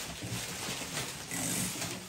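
Small paper packets being handled and rustled, with scattered light clicks and a low, indistinct murmur of voices.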